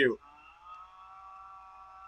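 A voice finishes a word, then a faint steady tone with a few overtones holds for about two seconds.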